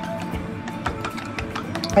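Chopsticks whisking two raw eggs in a ceramic bowl, tapping the bowl in quick, irregular clicks; the eggs are beaten only lightly, not over-beaten. Soft guitar background music plays underneath.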